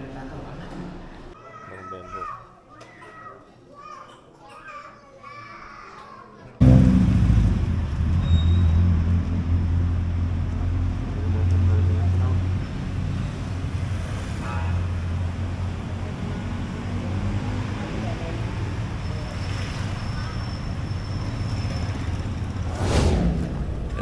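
Faint, indistinct voices for about six seconds, then a sudden jump to a loud, steady low rumble of outdoor street noise that holds for the rest.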